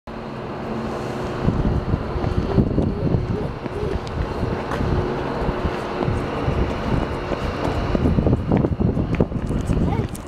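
Wind buffeting the microphone in uneven gusts, over a steady low hum that fades out about two-thirds of the way through.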